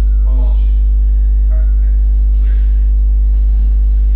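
Loud, steady electrical mains hum: a low drone with a stack of evenly spaced overtones, unchanging throughout.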